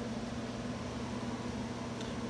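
Steady low hum with a faint hiss, the even sound of a running fan or air conditioner in a small room.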